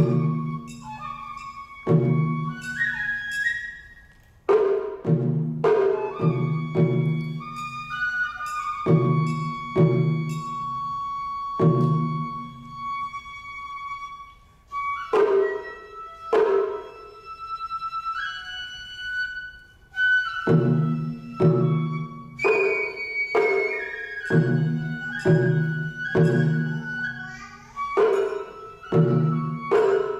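Matsuri-bayashi festival music: a shinobue bamboo flute plays a melody with long held notes over taiko drums, the big ōdō and the small shime-daiko, struck in uneven clusters. The drumming drops out briefly a few times, leaving the flute alone.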